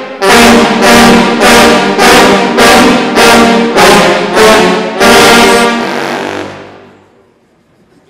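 Sousaphone ensemble playing loud short chords in unison, about two a second, then a final held chord that fades out about seven seconds in.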